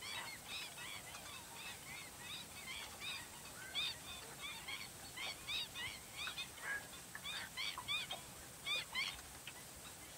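A waterbird colony calling: many short, high calls that curve upward in pitch, several a second and overlapping, with louder calls through the second half.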